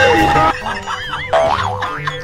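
Background music that cuts off about half a second in, followed by a cartoon 'boing' spring sound effect whose pitch bounces up and down several times.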